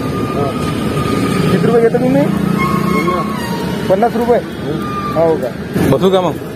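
Men talking in Marathi, in short exchanges, over a steady hum of road traffic.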